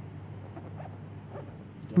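Quiet pause between sentences: a steady low hum under a few faint, distant voice-like sounds.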